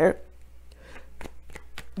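Tarot cards being handled and set down on a pile of cards: a few light, sharp clicks and flicks, over a faint steady low hum.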